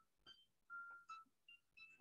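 Near silence with a few faint, short electronic tones at different pitches, scattered through the pause.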